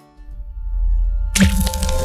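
Logo-animation sound effect: a low rumble swells up, then a sharp crack hits about one and a half seconds in, followed by held musical tones over a hiss.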